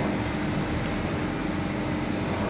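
Steady mechanical hum with a constant low tone from a running CNC press brake.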